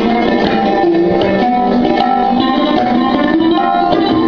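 Sarod and tabla playing Hindustani classical music together: plucked, sliding sarod melody over a run of tabla strokes.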